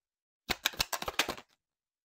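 Tarot cards being shuffled: a quick run of sharp card snaps lasting about a second.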